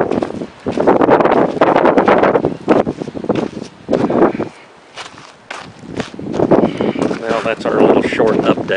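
Gusty wind buffeting the camera microphone in loud rushes, easing off for a while about halfway through and picking up again near the end, with a few scattered steps or clicks in the lull.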